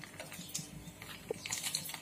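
A puri frying in hot oil in a steel kadai: faint, irregular crackles and small pops, growing busier near the end.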